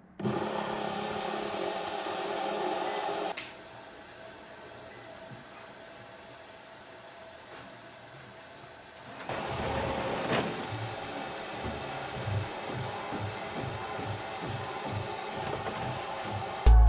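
A fidget spinner whirring as it spins on the glass of a flatbed scanner, stopping after about three seconds. From about nine seconds in, the scanner's carriage motor runs with a low, uneven pulsing as it scans.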